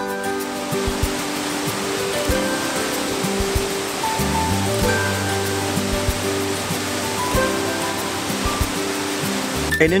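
Steady rush of a waterfall cascading down a rocky gorge, under background music with sustained notes. The water sound cuts off near the end.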